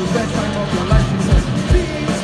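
Live rock band playing through a stage PA: electric guitars, bass and a drum kit, with a steady kick-drum beat.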